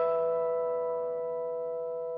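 Guitar notes plucked just before, left ringing together as a sustained chord that slowly fades, with no new notes struck.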